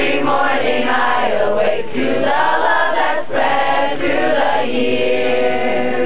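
A group of teenagers singing a song together in chorus, with long held notes that change every second or so.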